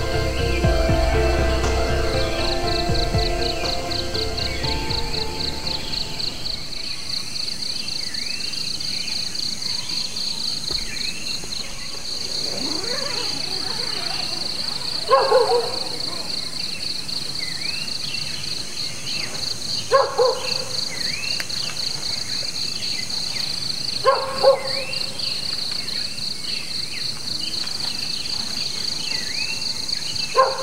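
Evening insects, crickets, chirring steadily in a rapid high pulse, under background music that fades out in the first few seconds. A frog gives short calls every four or five seconds, a double call near the middle of the second half.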